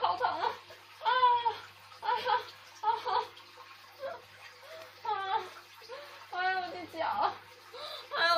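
A woman's short, wordless moans and whimpers of pain from a sprained ankle, coming about once a second with brief pauses between.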